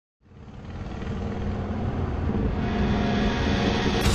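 Motorcycle engine running, fading in from silence and growing louder over the first second or so into a steady low rumble.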